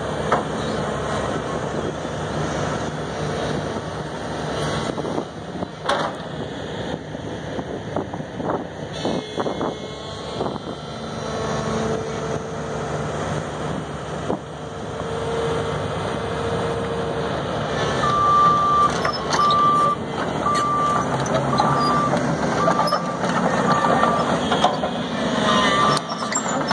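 Link-Belt 210LX hydraulic excavator running, its diesel engine and hydraulics working steadily as the machine moves. About two-thirds of the way through, a travel alarm starts beeping, about one beep a second.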